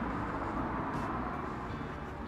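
Steady outdoor background noise, a low rumble with a hiss over it, easing off slightly toward the end.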